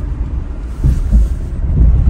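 Low rumble of a 1996 Mercedes E-Class petrol car driving slowly, heard from inside the cabin, with uneven bumps of wind-like buffeting on the microphone.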